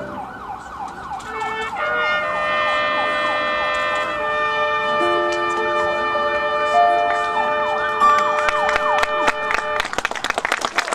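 Quiet closing passage from a marching band's front ensemble. Wavering, siren-like gliding tones give way, about two seconds in, to sustained notes that build into a held chord, with sharp struck metallic notes ringing out near the end.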